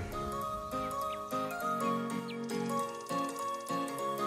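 Background music: a melodic tune of short pitched notes.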